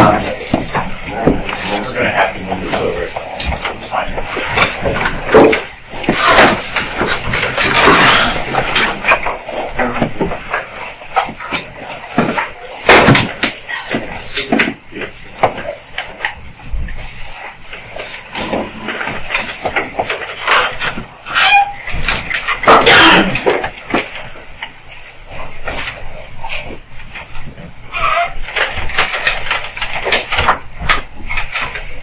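Low murmured voices with rustling and short knocks and bumps of handling close to the microphone, in a room with a little echo.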